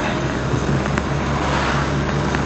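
Steady engine and road noise inside a moving car, with air rushing in through an open window.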